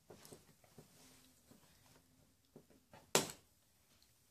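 Faint clicks of a small plastic screw-breaking tool being fitted over a screw shank in a carpeted floor, with one sharp, louder click about three seconds in.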